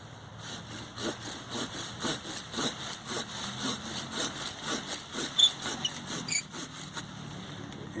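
Curved pruning saw cutting through a small tree branch in quick, even strokes, about three a second, stopping about seven seconds in. The saw cuts on the pull stroke.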